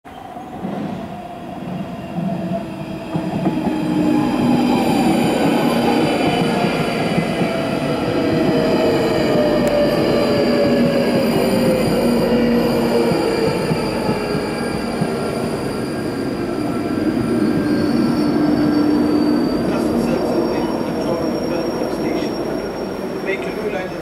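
London Underground 1995 Stock train approaching and slowing, its electric traction whine falling steadily in pitch as it brakes, with high-pitched wheel squeal over it. It grows louder over the first few seconds and then holds steady.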